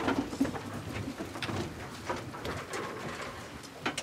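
A roomful of people rising from their seats: chairs creaking and scraping, clothes rustling and feet shuffling, with scattered knocks, the sharpest near the end.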